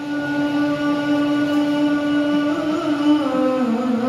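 A man's voice singing one long held note of a sholawat, an Islamic devotional chant, through a microphone; the pitch bends slightly about three seconds in.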